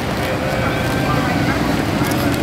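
Mercedes-Benz SLS AMG's 6.2-litre V8 running at low revs as the car rolls slowly past, getting slightly louder as it comes close. Voices in the background.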